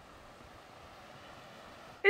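Faint, steady rush of a fast-flowing river, an even hiss growing slightly louder near the end.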